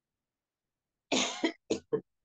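A person coughing: one cough about a second in, followed by two shorter ones.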